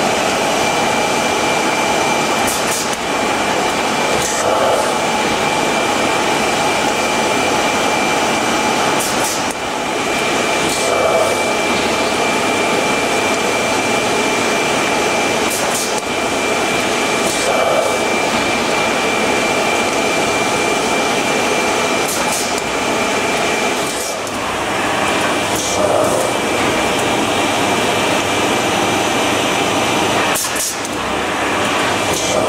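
Italian-built NAVONA square-bottom paper shopping bag making machine running: a steady mechanical din with a constant high whine, and short sharp clicks recurring every few seconds as bags pass through.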